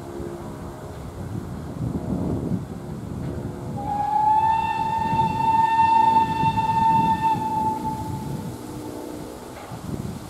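Px29 narrow-gauge steam locomotive sounding one long blast on its steam whistle, about four seconds long, starting about four seconds in with a slight upward slide into a steady note. A low rumble runs underneath.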